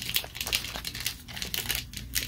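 Foil wrapper of a trading-card booster pack crinkling and rustling in the hands, a quick irregular run of small crackles.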